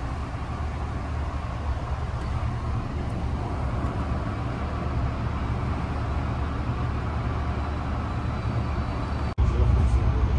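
Steady low rumble and hiss of a stationary Amtrak passenger car's interior. About nine seconds in it cuts out for an instant and returns louder, with a heavier low rumble.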